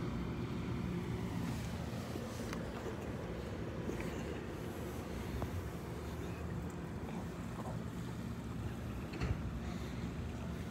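Steady low rumbling noise of wind on the microphone, with a few faint ticks.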